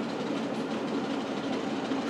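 A train passing with a steady, even running noise.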